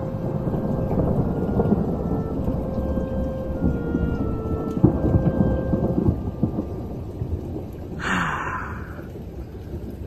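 Thunderstorm: steady heavy rain with thunder rumbling throughout, swelling and cracking sharply about halfway through.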